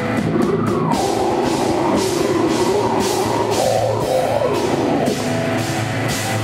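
Live heavy metal band playing: heavily distorted guitars over a pounding drum kit, with the riff changing about five seconds in.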